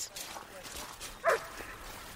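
A German shepherd gives one short yelp that falls in pitch, a little over a second in, over faint background noise.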